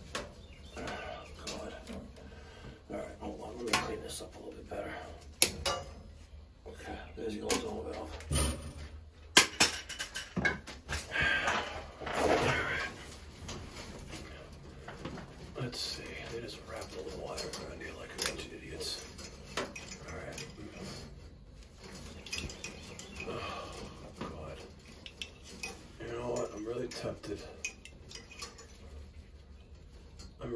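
Gloved hands sorting and handling low-voltage thermostat wires, plastic wire nuts and lever connectors on a zone valve. The result is scattered small clicks, taps and rattles, with a few louder knocks about nine seconds in.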